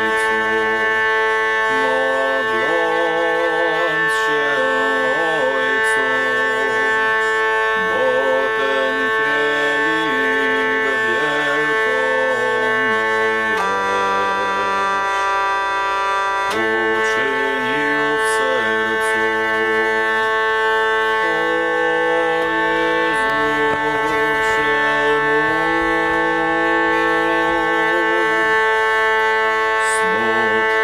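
Hurdy-gurdy playing a slow, ornamented melody with trills over a continuous drone. About halfway through it holds one chord for a few seconds.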